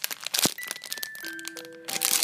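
Clear plastic squishy packaging crinkling as it is handled, loudest in the first half-second, over background music with a few held notes.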